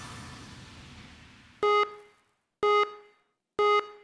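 The last of a music clip dies away, then three identical short electronic countdown beeps sound one second apart.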